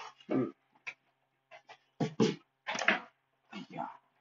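A man's voice only: a hesitant "hmm" and a few short mutterings with silent gaps between.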